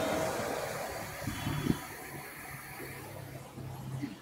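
Steady hiss of background noise, fading slowly, with a few soft knocks about a second and a half in and a faint low hum starting after the middle.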